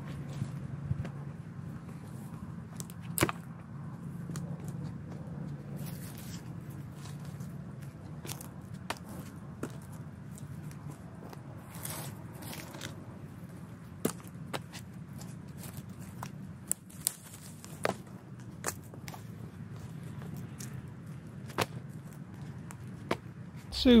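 Dry brush and twigs crackling and snapping, with scattered sharp cracks, as Virginia creeper vines and roots are pulled and torn out of the ground by hand. A steady low hum runs underneath.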